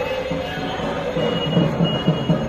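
Dhak, the large Bengali barrel drums of Durga Puja, being beaten with sticks in a fast, even rhythm.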